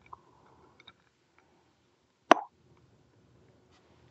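Sipping from a glass of spirit: small wet mouth clicks, then one sharp lip smack a little over two seconds in.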